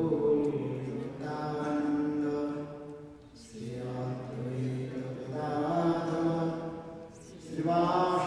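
A man's voice chanting devotional prayers in a slow melodic chant. He holds long notes in phrases of about three to four seconds, with brief pauses for breath between them.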